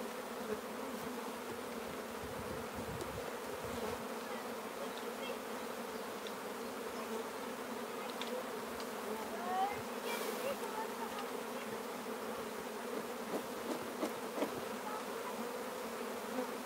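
Honeybees buzzing in a steady hum around an open hive as its frames are lifted out and inspected. A few faint knocks sound in the second half.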